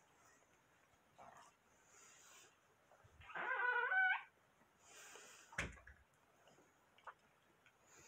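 A short, wavering, whine-like vocal sound lasting about a second, followed by a single knock.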